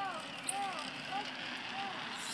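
Faint, distant voices talking over a steady outdoor hiss, with a small click about half a second in.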